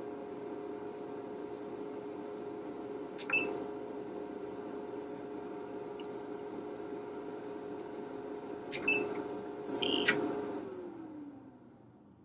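Cutting plotter humming steadily after power-on, with a click about three seconds in and a few more clicks of its control-panel buttons about nine to ten seconds in. Near the end the hum slides down in pitch and fades out.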